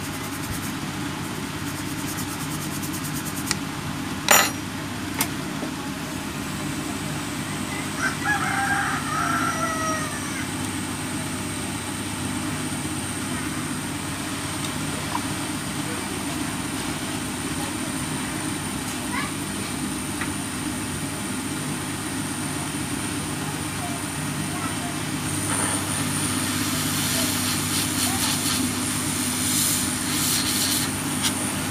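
A steady low mechanical hum throughout, with a sharp click about four seconds in and a distant rooster crowing once around eight seconds. Near the end the rushing hiss of a hot air rework gun blowing joins in.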